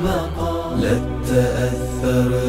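A cappella Islamic nasheed: layered male voices hold long notes without words over a low sustained vocal drone, the harmony shifting a little under a second in.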